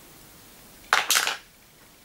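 A used-up cosmetic pencil tossed away, making a brief clatter and rustle about a second in, against otherwise quiet room tone.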